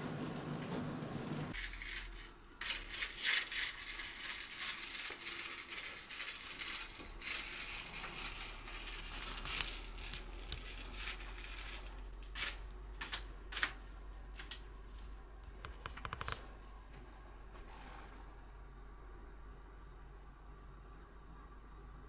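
Irregular cracks, clicks and scraping from the timbers of an old wooden log house, in a dense cluster that thins out after about sixteen seconds, over a low steady hum. The creaking is taken for the old house slowly giving way.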